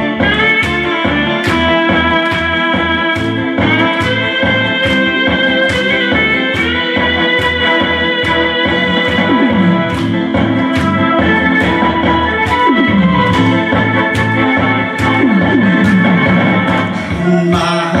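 Karaoke backing track for a Korean trot song in a disco arrangement, playing its instrumental intro: sustained keyboard-style melody over a steady beat.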